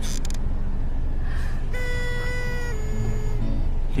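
Steady low rumble of a moving car heard from inside the cabin. About two seconds in, a few sustained music notes come in and step down in pitch.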